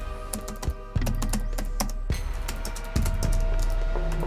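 Irregular clicks of typing on a laptop keyboard over sombre background music of sustained drone-like tones with a low rumble.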